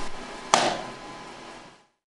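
A single plastic knock, about half a second in, as the toner bottle is handled in the toner compartment of an Océ PlotWave 300 printer, with a short ringing tail; the sound cuts out near the end.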